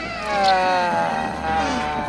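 A man's long, drawn-out scream, its pitch slowly falling, loudest about half a second in.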